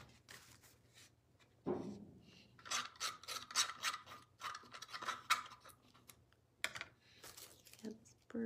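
A flat applicator rubbed over collage paper on a wooden birdhouse, spreading acrylic medium in quick scratchy strokes that come in a rapid run in the middle.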